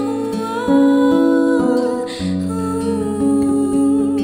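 Nylon-string acoustic guitar playing bossa nova chords, with a woman's voice carrying a wordless melody over it; the bass drops to a new chord about halfway through.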